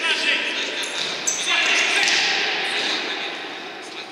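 Indoor futsal play: the ball being struck and bouncing on the hall floor, with players' voices calling out, loudest in the middle.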